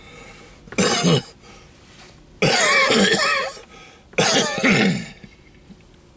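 A man coughing and clearing his throat in three loud bouts, the longest in the middle.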